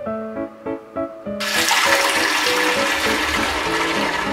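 Kitchen faucet running hot water into a stainless steel basin of dish soap, working up suds; the water starts about a second and a half in and is the loudest sound, over soft piano music.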